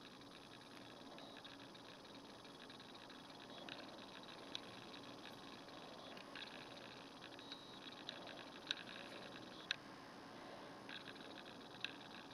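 Faint handling noise from fingers turning a small gold-and-silver metal ring, with a few small sharp clicks of metal and fingernail, the loudest in the second half, over a low steady hum.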